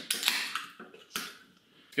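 Aluminium Coca-Cola Zero can being opened and handled: short clicks and a brief sharp hiss about a second in, typical of a ring-pull tab and escaping gas.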